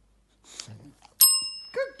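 A desk call bell, struck once by an English bulldog's paw on its plunger, gives a single bright ding that rings on and fades over about half a second.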